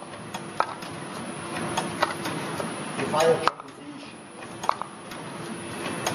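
Meyer potting machine's pot destacker running with a steady hum and irregular sharp clicks and knocks, about six of them, as fibre pots are pulled off the stack and dropped into holders.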